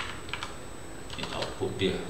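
Computer keyboard keys clicking as text is edited: two sharp keystrokes at the start, then a quicker run of key presses in the second half.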